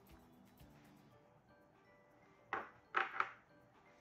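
Quiet background music, with a short plastic clatter about two and a half seconds in and two more just after three seconds: a clear plastic spam musubi mold and its press being lifted off and set down on a cutting board.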